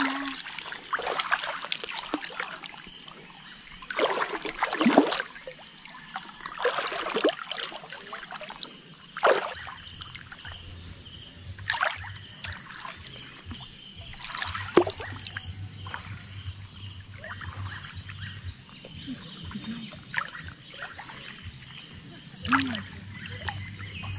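Water splashing and swishing in irregular bursts as someone wades through weedy, waist-deep water.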